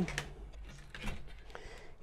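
Faint scattered clicks and light knocks from hands handling a terracotta flowerpot and potting soil.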